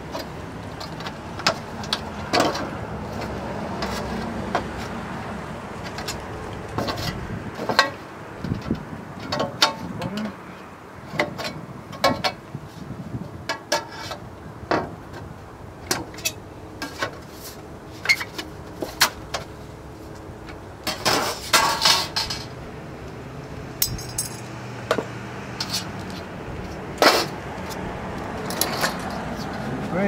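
Aviation tin snips cutting thin aluminum flashing in short, irregular clipped strokes, with the sheet clanking and rattling as it is handled. A quick run of snips comes a little past two-thirds of the way in, and one sharp snap near the end is the loudest.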